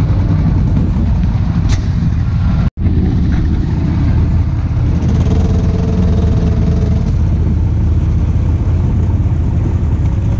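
A vehicle engine running with a steady low drone while driving slowly. The sound drops out for an instant just under three seconds in, at an edit cut.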